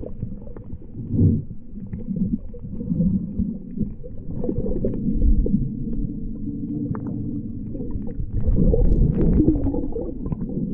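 Muffled low rumbling and churning of water heard through an action camera held under the surface of shallow sea water, swelling louder about a second in and again near the end.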